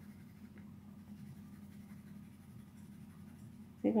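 Graphite pencil scratching faintly on paper in back-and-forth shading strokes.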